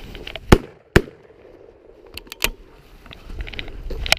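Two shotgun shots in quick succession, about half a second apart, fired at a woodcock, followed a second and a half later by a couple of lighter clicks.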